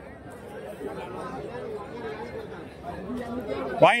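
Background chatter of many people talking at once, with a man's voice starting up close near the end.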